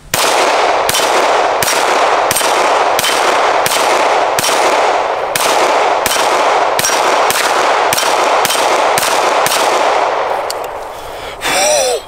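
Canik TP9 SFX Rival 9mm pistol fired in a rapid string, about three shots a second for roughly ten seconds, each shot followed by metallic ringing, typical of hits on steel plate targets.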